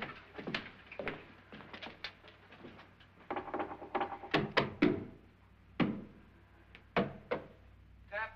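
Knuckles tapping and knocking on a wall, irregular single knocks with a quick cluster in the middle, sounding the wall for a hollow spot.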